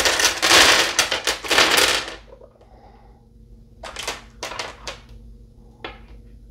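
Small polished stone runes clattering against each other and the hard countertop as a hand stirs the pile, a loud dense rattle for about two seconds. A few separate clicks follow as single runes are picked out and set down.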